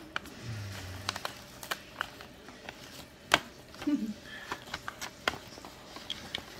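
Paper envelope being handled and opened by hand: scattered crinkles and crackles of paper, the sharpest about three seconds in.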